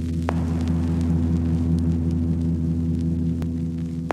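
Ambient electronic music: a low, steady drone with a slow throb in its middle, sprinkled with a few faint sharp clicks.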